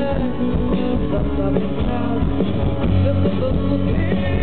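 Live rock band playing: electric guitar, bass, drums and keyboard, with a woman singing.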